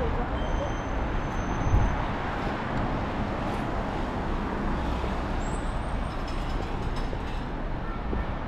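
Street traffic noise: a steady wash of passing vehicles, with a brief low thump about two seconds in.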